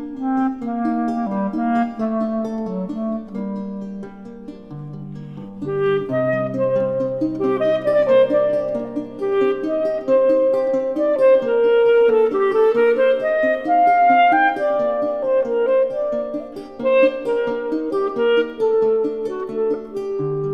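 A clarinet playing a flowing, singing melody over plucked lute accompaniment. The music dips softer around four to six seconds in, then swells as the clarinet climbs higher over low sustained bass notes.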